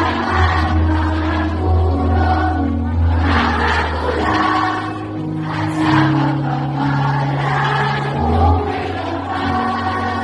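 A choir of many voices singing a song together over instrumental backing, with long held bass notes underneath.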